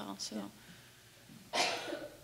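A single short cough about one and a half seconds in.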